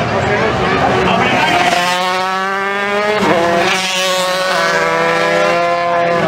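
Motorcycle engine held at high revs, a steady pitch from about two seconds in that dips briefly just after three seconds and picks up again, over crowd chatter.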